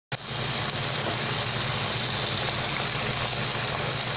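Pork binagoongan cooking in a wok, its shrimp-paste sauce sizzling steadily.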